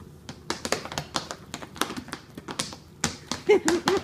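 A dog's booted paws tapping and clicking on a hardwood floor as it steps about, an irregular run of light taps. A person's voice sounds briefly near the end, the loudest moment.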